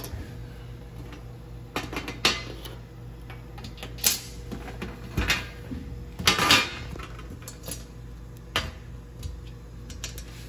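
Small plastic toy minifigures and a toy shield being handled and set down on a hard tabletop: a scattering of short clicks and taps, with a denser clatter about six seconds in.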